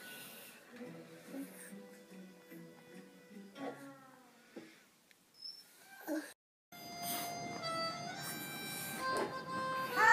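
Faint, brief sounds in a quiet room. After a short dropout about two-thirds through, electronic music comes in, with steady held notes.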